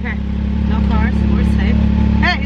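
Side-by-side dune buggy's engine idling steadily, a constant low hum heard from inside the open cab.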